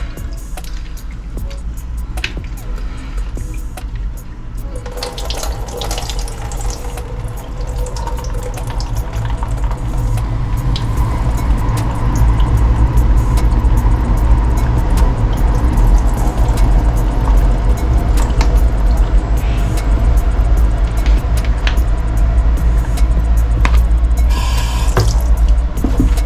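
Water splashing and running in a stainless steel sink as pineapple chunks are swished by hand in a bowl of water and the bowl is drained, louder from about a third of the way in. Background music plays throughout.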